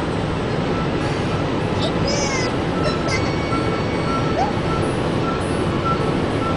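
Steady road and wind noise inside a car's cabin cruising at highway speed, with a few faint, brief high-pitched squeaks about two seconds in.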